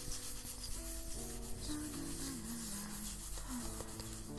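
Hairbrush bristles stroking through long hair, a repeated soft rubbing, over soft piano music and humming.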